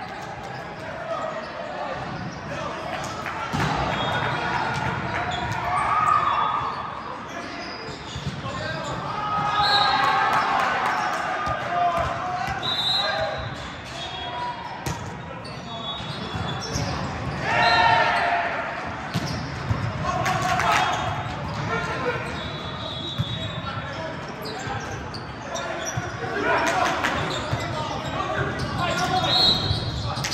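Indoor volleyball play in a large, echoing gym: players shouting to each other, short high sneaker squeaks on the court, and the ball being struck.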